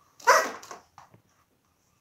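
A single short, loud vocal cry with a clear pitch, followed about a second later by two faint short sounds.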